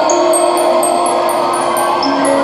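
Live band playing a song's instrumental opening: sustained keyboard chords with short, high chiming notes repeating several times a second over them.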